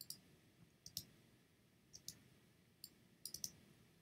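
Light computer mouse clicks, about one a second, several in quick pairs, over near-silent room tone.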